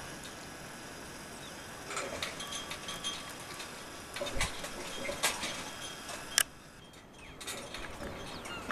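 Outdoor harbour background: a steady faint hiss with a few scattered sharp clicks and knocks, the sharpest about six seconds in.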